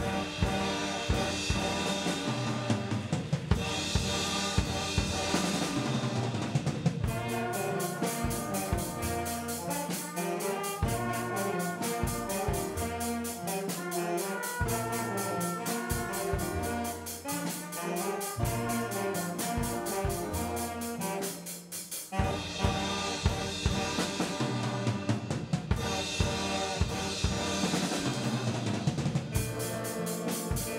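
A school jazz band playing with a saxophone section, piano and drum kit, the cymbals and drums keeping a busy beat under the horns. The music dips briefly about two-thirds of the way through, then comes back in full.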